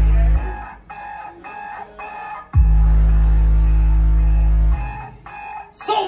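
Live heavy band playing an intro: very loud, deep bass notes held about two seconds each, the first ending about half a second in and the next coming in near the halfway point, with quieter sustained higher tones between them.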